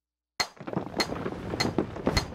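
Hammer-and-chisel blows on marble, a quick regular run of sharp strikes about every half second over a gritty crumbling noise of falling stone chips, beginning about half a second in.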